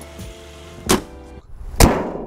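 A car bonnet slammed shut about a second in, then a louder, sharper hit near the end.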